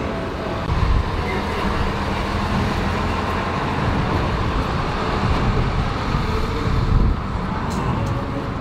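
Street traffic: a steady rumble of passing cars on a city road, swelling briefly about a second in and again near the end.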